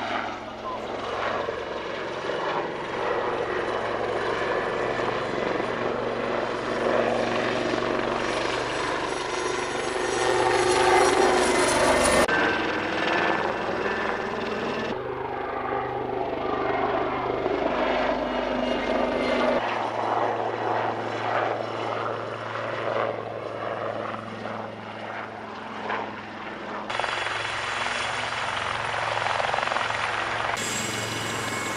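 Military helicopter flying overhead and coming in to land: a loud, steady rotor and turbine noise, with several abrupt changes in its sound.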